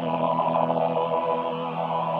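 Behringer VC340 analog vocoder synthesizer playing one sustained chord, held steadily with no break.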